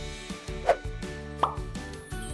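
Background music with two short rising cartoon pop sound effects, the second higher than the first.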